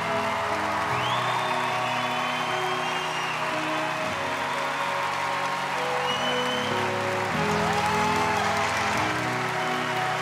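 Audience applauding and cheering, with a few whistles, over sustained background music.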